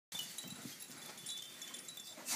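Faint tinkling chime tones from a baby's musical activity play gym, a few short high notes scattered through, with soft rustling of the baby moving on the mat.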